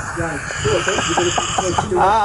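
Men's voices laughing and chatting, in short broken bursts.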